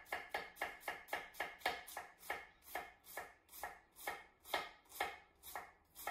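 Chef's knife slicing green cabbage thin on a wooden cutting board: a steady, even run of short knife strokes, about four a second.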